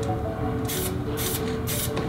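Aerosol spray-paint can hissing in three short bursts in the second half, paint dusted through a stencil, over steady background music.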